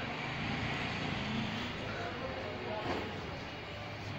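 Street ambience: a steady background of traffic noise with indistinct voices of people nearby.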